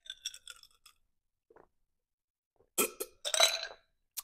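A drinking glass clinks a few times as it is picked up. A sip of water follows, then a short breathy exhale or burp-like sound from the drinker near the end.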